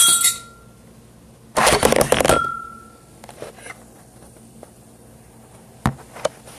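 A glass bottle of lively, carbonated homemade kombucha clinks against a drinking glass and rings, then a loud rush of noise lasting under a second comes from the bottle being opened. The glass rings again after it, and there is a small click near the end.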